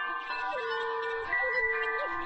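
Navajo flute playing a slow melody, holding notes with short bends between them, over wind chimes ringing in many overlapping sustained tones. A new high chime rings out partway through.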